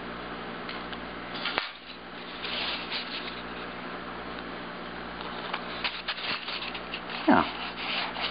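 Fingers rubbing and handling a polystyrene foam block. There is a sharp click about one and a half seconds in, then scattered rustling and light ticks.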